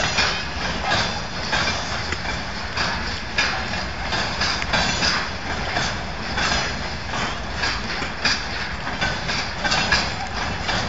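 Loaded freight train flatcars rolling past close by: wheels clacking over the rail joints in an uneven run of clicks over steady rolling noise.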